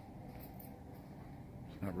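Quiet department-store ambience: a low, steady background murmur with a couple of faint steady tones, until a man starts speaking near the end.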